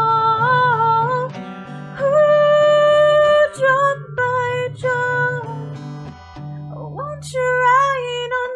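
A woman singing slow, long-held notes over a steadily strummed acoustic guitar. Near the end the sound dips briefly and her voice slides up into a new note.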